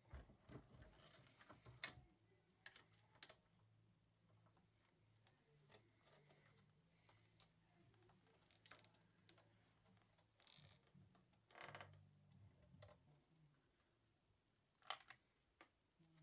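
Faint, scattered clicks and knocks of brass rifle cases being handled and resized in a single-stage reloading press. There are a few sharp metallic ticks and two short rattling clinks a little past the middle, over a faint low hum.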